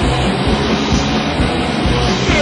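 Loud, dense punk rock from a raw band demo recording: distorted electric guitar over bass and drums.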